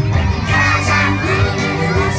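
A group of children singing and shouting along with upbeat music, many high voices at once over a steady bass line.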